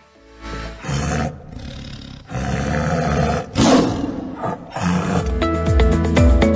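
Tiger roaring: a series of rough, drawn-out roars, the loudest a little past halfway. Music comes in near the end.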